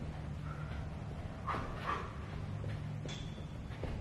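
A person doing fast mountain climbers: scattered taps of feet on the floor, with two short bursts of hard breathing near the middle.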